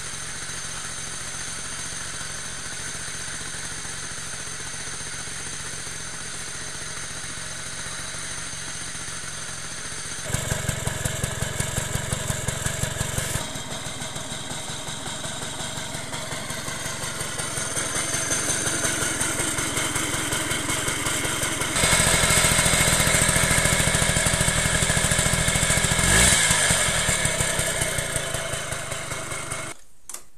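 Suzuki FZ50 moped's small two-stroke single running after a cold start in sub-zero weather, with a steady, fast exhaust beat. It gets louder in steps about a third of the way in and again past the two-thirds mark, then fades and cuts off at the end.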